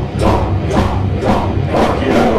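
Heavy metal band playing live at full volume: distorted electric guitars over a steady drum beat.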